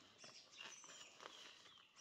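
Near silence: quiet forest ambience with a few faint, soft rustles and a faint high chirp.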